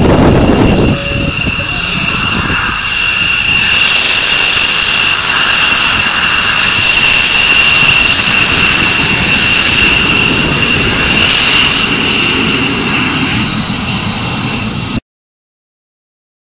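F-16AM Fighting Falcon jet engine running at taxi power, a steady whine with several high tones as the fighter rolls past close by. It cuts off suddenly near the end.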